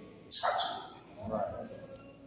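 Short bursts of a man's voice, a sharp-edged syllable about a third of a second in and a shorter one past the middle, with quiet between.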